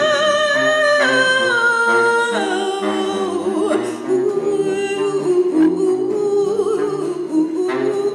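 A female voice singing without words, alongside a baritone saxophone playing low notes. The melody steps down through long held notes, then settles into a lower, wavering line.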